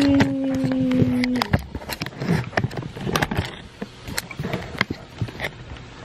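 A drawn-out hummed or sung vocal note, slowly falling in pitch, ends about a second and a half in. It is followed by irregular clicks and knocks of a camera being handled and screwed onto a tripod's mounting screw.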